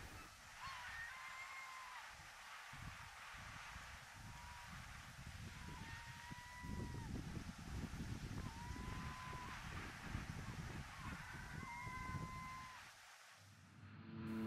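Faint bird calls in the open: a string of about seven short, level-pitched calls, each under a second, spaced a second or two apart. A low, gusting rumble of wind on the microphone comes in about halfway through.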